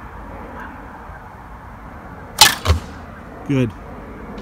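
Japanese longbow (yumi) shot from full draw: the string is released about two and a half seconds in with a sharp, loud crack, followed a moment later by a second, duller knock.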